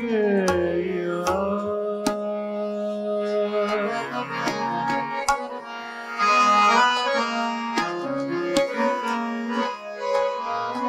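Harmonium playing a melodic interlude over a steady tanpura drone, with sparse tabla strokes, in a Hindustani classical performance. A sung note glides down and ends right at the start.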